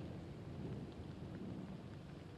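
Rainstorm: rain falling on floodwater under a low, steady rumble of thunder.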